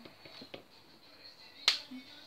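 A few light knocks of a utensil in an electric pressure cooker's pot, then about a second later one much louder, sharp click.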